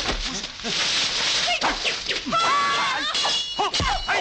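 Dubbed kung fu fight sound effects: rushing swishes and hits, and a metal clash just past the middle that rings for most of a second, with short shouts from the fighters.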